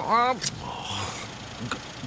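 A man's short, wordless voice sound, a mumbled exclamation, in the first half second, cut off by a click. After that only a low, even background noise.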